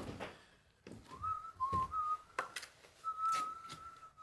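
A person whistling a slow tune, mostly long held notes, over scrapes and taps of a trowel working mortar into the joints of a stone wall during pointing.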